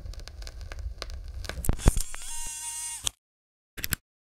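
Crackling noise with scattered sharp clicks over a low rumble. About two seconds in a pitched tone with overtones joins it, and everything cuts off suddenly about three seconds in, with one short burst of noise near the end.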